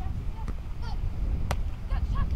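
A beach volleyball being struck by a player, one sharp slap about one and a half seconds in, over a steady rumble of wind on the microphone, with a short high-pitched call just before the hit.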